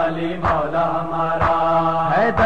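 Voices holding a long sustained chanted note in a devotional Urdu recitation, over a deep thump that beats about once a second.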